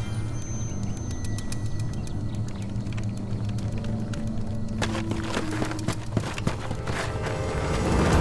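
Tense dramatic film score: sustained low drones with scattered sharp percussive ticks, swelling louder near the end.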